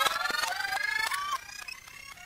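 Analogue electronic sound effects from a synthesizer effects box: several pitched tones with overtones gliding slowly upward, broken by sharp clicks. The sound drops off about one and a half seconds in and fades out.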